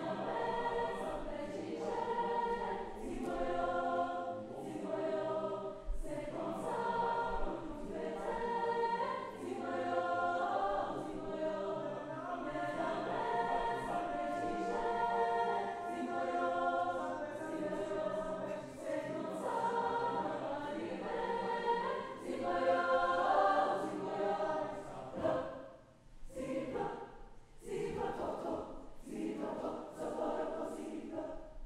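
Mixed choir of young men's and women's voices singing in harmony. The sustained phrases break off briefly near the end and give way to short, clipped notes.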